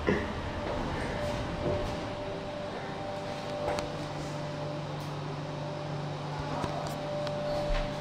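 Passenger lift car travelling with its doors shut: a steady low hum from the lift drive comes in a couple of seconds in and holds, with a faint steady whine and a few light clicks from the car.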